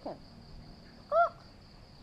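A single short, arched bird call about a second in, which the listener wonders is a chicken, over a steady high drone of insects.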